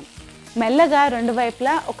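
Chicken sizzling in a grill pan over a gas flame, a faint steady hiss, overlaid from about half a second in by a woman's voice, which is the loudest sound.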